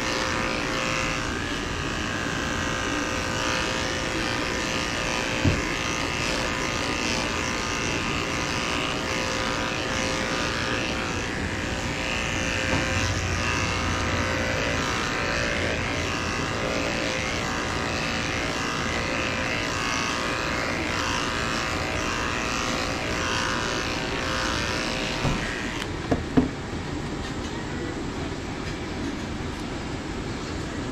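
Corded electric dog grooming clippers running steadily with a constant motor hum while shaving a poodle's curly coat. About four seconds before the end the hum stops, with a few sharp clicks as the clippers are switched off and set down.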